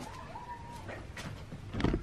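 A faint, drawn-out animal call that wavers in pitch and fades out about a second in, then a single sharp knock near the end.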